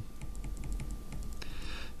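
Computer keyboard keys pressed repeatedly, a run of light quick clicks, as presentation slides are stepped back one by one.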